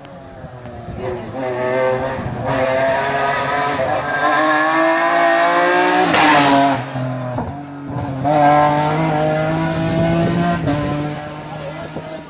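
BMW E46 race car at full throttle, its engine pitch climbing as it approaches and passes, loudest about halfway through. The pitch drops briefly, then climbs again as the car pulls away and fades near the end.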